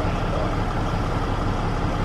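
Engine idling steadily: an even, low hum with no change in speed.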